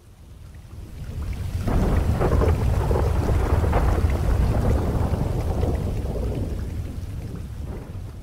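Rolling thunder over steady rain: a deep rumble that builds over the first two seconds, then slowly dies away.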